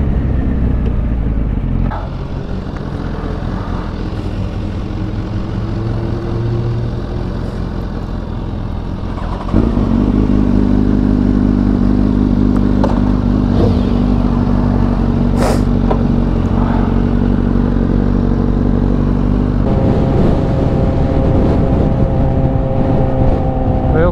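Inline-four sports motorcycle engines, in several shots joined by cuts. Through the middle stretch an engine holds a steady idle, and near the end the sound changes to a bike running at a steady speed.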